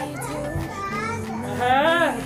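Young children's voices calling out while they play, over a background pop song with singing.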